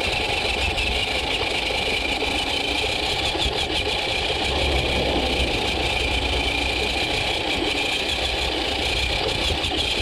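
GMADE Komodo GS01 electric RC crawler truck driving over gravel, heard from a camera mounted on it: a steady high whine from the electric motor and gears over the crunch and rumble of the tyres on gravel.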